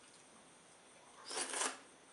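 A mouthful of pounded yam fufu coated in slimy ogbono and okra soup being taken into the mouth: one short, noisy eating sound, about half a second long, a little past the middle.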